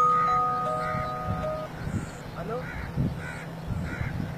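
Mobile phone ringtone: a chime-like melody of held notes that stops a little under two seconds in. A few faint bird-like calls follow.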